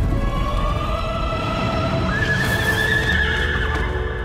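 Dramatic film-score music climbing in pitch to a long held high note, with a horse neighing and a racehorse's hooves galloping on a dirt track beneath it.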